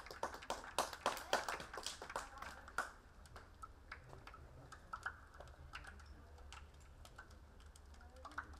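Scattered clapping from a small crowd of spectators, thick in the first three seconds and then thinning to a few sparse claps.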